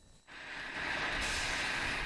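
Construction machinery running: a steady rushing hiss that fades in shortly after the start and grows brighter about halfway through, then cuts off.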